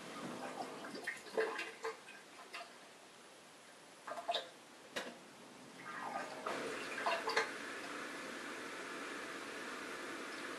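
Bosch dishwasher drain pump repeatedly starting and stopping, with water gurgling and sloshing in the sump in short bursts. The bursts come in three clusters, then give way to a steadier, even sound near the end. The stop-start is the fault: the pump keeps cutting out while water is in the sump and fails to drain it.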